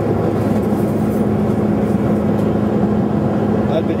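Steady airliner cabin noise heard from inside the cabin: the engines and airflow make an even drone with a constant low hum.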